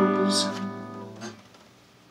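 Acoustic guitar's final strummed chord ringing out and fading away to near silence, the end of a blues song, with a small knock just before it dies.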